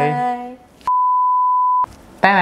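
A drawn-out voiced 'bye' trails off in the first half second. Then, about a second in, a single pure electronic beep at one steady pitch sounds for about a second and cuts off abruptly, with silence on both sides, like a censor bleep added in editing.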